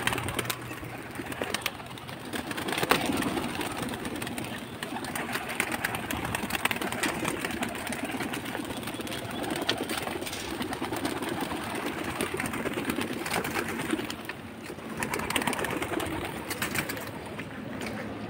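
A loft of domestic pigeons cooing steadily, with scattered sharp clicks and wing flaps as birds are driven out of their wire cages with a stick.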